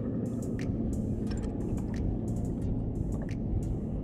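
Steady low rumble with light, irregular slaps and ticks of water lapping against a small boat's hull.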